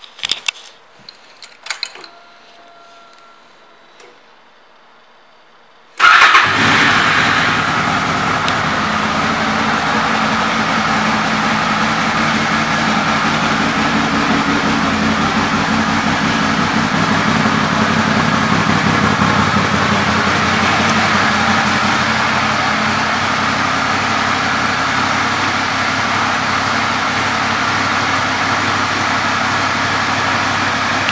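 2002 Honda Interceptor 800 V4 engine with an aftermarket Staintune exhaust. There are a few clicks at the controls, then about six seconds in the engine starts with a sudden loud burst and settles into a steady idle.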